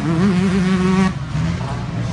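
Yamaha motocross bike's engine running at high revs, held steady, then dropping in pitch about halfway through; it starts to rev up again at the very end.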